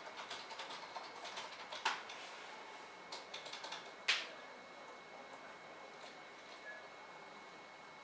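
Faint crackling and rustling of long backcombed hair being twisted into a roll between the fingers, with sharper clicks about two and four seconds in. The handling noise thins out in the second half.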